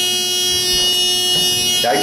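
Elevator fire service buzzer sounding as a steady electric buzz in the car, cutting off suddenly near the end.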